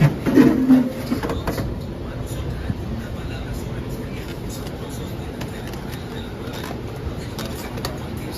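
A man's short laugh in the first second, then steady low background noise at an even level, like distant traffic or a running motor.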